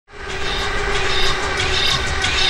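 Electric passenger train passing, a steady rumble of wheels on rails with a steady hum, fading in at the start.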